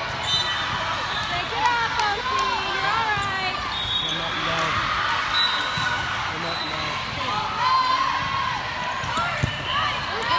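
Gymnasium hubbub: many overlapping voices of players and spectators in a large hall, with a few sharp thuds of volleyballs hitting the hardwood floor or players' arms.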